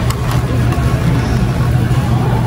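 A steady low hum with an even hiss above it: the continuous background drone of a large warehouse store.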